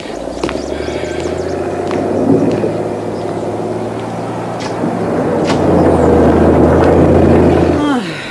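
Heavy diesel engines of bulldozers running steadily with a low rumble. The sound grows louder from about five seconds in and cuts off abruptly just before the end.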